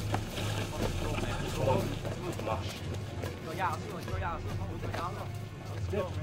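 Film soundtrack: indistinct voices over soft background music with a steady low hum.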